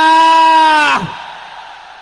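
A man's voice over the PA holding one long shouted vowel at a steady pitch for about a second, dropping as it breaks off, then its echo dying away in the large tent.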